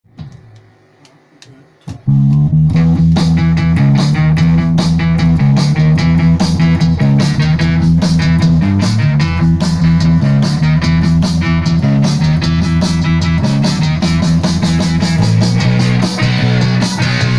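A rock band playing live, with a Stratocaster-style electric guitar, an electric bass and a drum kit. After a brief quiet, the band comes in loud about two seconds in and keeps a steady driving beat under heavy bass notes.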